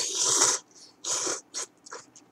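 A person slurping instant curry ramen noodles from a cup: one long loud slurp at the start, a second shorter slurp about a second in, then a couple of quick short sucks near the end.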